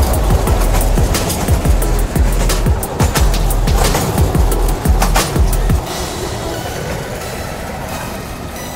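Small narrow-gauge toy train rumbling and clattering along its rails close by, with irregular knocks from the wheels and carriages. Music plays under it, and the rumble stops about six seconds in.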